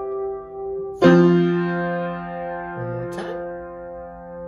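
Yamaha piano played with both hands: a chord is struck about a second in and another just after three seconds, each ringing on and slowly fading under the sustain.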